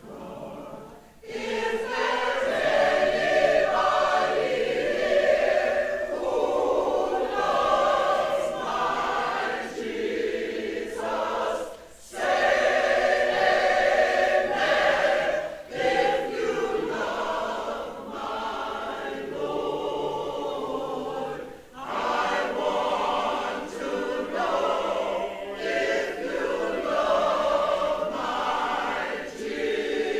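Mixed choir of men's and women's voices singing a spiritual, starting about a second in, with brief breaks between phrases.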